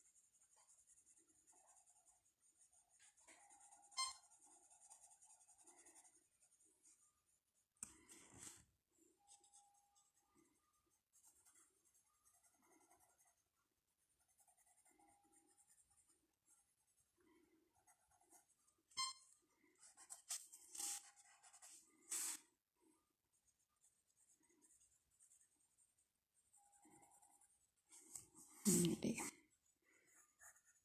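Graphite pencil drawing on paper: faint, intermittent scratching strokes, with a couple of sharp clicks.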